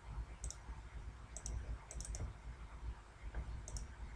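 Computer mouse button clicking, with a few quick pairs of short, faint clicks spread over the four seconds, above a low room hum.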